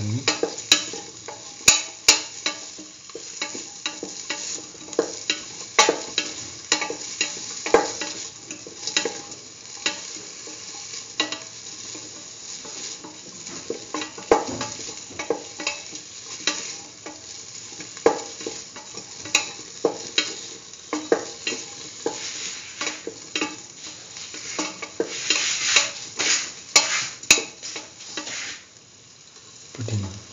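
Tomato pieces, shallots, garlic and green chillies sizzling in oil in a stainless steel pan while a spatula stirs them, scraping and knocking against the pan at irregular intervals.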